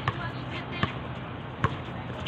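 Basketball being dribbled on a hard outdoor court: three bounces about 0.8 s apart.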